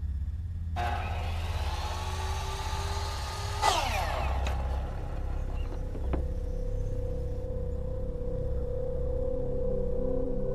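Horror film sound design: a swelling riser that builds over a low rumble to a sharp hit about four seconds in, with steep falling sweeps after it, then a single held tone over the rumble.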